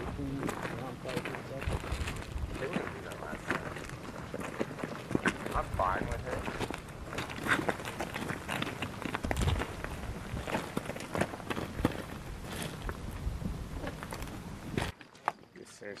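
Indistinct voices over a dense run of short knocks, clicks and rustling, the sound of troops moving on foot with their gear. It drops away suddenly about a second before the end.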